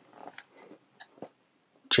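Faint handling noise of metal dial combination padlocks being moved in the hand, with a couple of light clicks about a second in.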